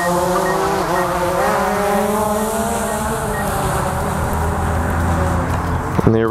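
DJI Phantom 4 quadcopter's propellers whirring at full lift as it takes off and climbs: a loud, steady multi-tone whine whose pitch shifts slightly.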